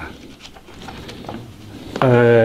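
A pause in a man's speech: quiet room tone with a few faint, soft sounds and no clear voice.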